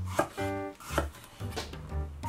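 Chef's knife cutting through a long eggplant and striking a wooden cutting board: three cuts about a second apart, over background music.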